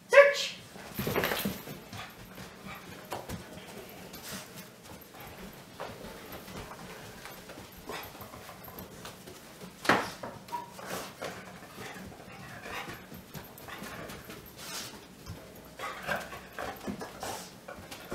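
A dog searching by scent around a wire exercise pen for a hidden wintergreen tin, moving about, with scattered light clicks and knocks and a sharper knock about ten seconds in.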